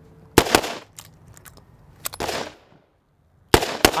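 Revolvers being fired at an outdoor range: several sharp shots, mostly in close pairs, each trailing off briefly.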